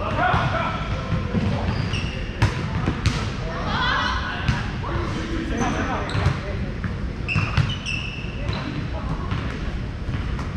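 Volleyball play in a gym: several sharp smacks of the ball being hit or hitting the floor, spaced a second or more apart, amid players' voices.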